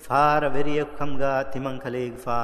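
A man's voice reciting in a steady, chant-like, nearly level pitch: speech only, with no other sound.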